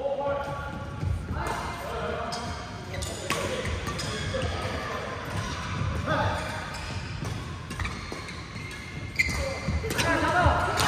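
Badminton rally in a large indoor hall: racket strings hit the shuttlecock with sharp, echoing smacks about every one to two seconds, among the players' voices.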